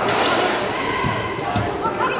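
A racquetball being hit during a doubles rally: two sharp hits about half a second apart, with people talking.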